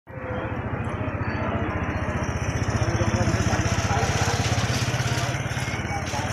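Motorcycle engine of a tricycle idling with a fast, steady putter that grows a little louder about halfway through.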